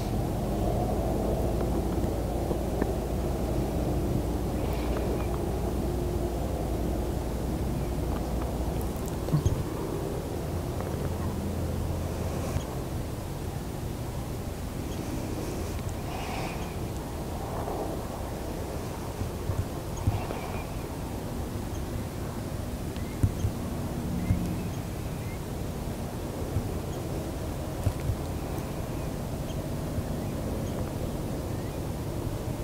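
Outdoor ambience: a steady low rumble with a faint hum, like a distant engine or wind, and a few short faint knocks and clicks here and there.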